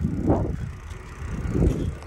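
A bicycle riding along an asphalt road: rumbling tyre and road noise mixed with wind on the microphone. The noise swells twice, once shortly after the start and again about a second and a half in.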